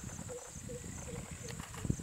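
Outdoor field ambience: a steady high insect drone, a short low call repeating about every 0.4 s, and rustling low down from elephants grazing in tall grass. A single thump near the end.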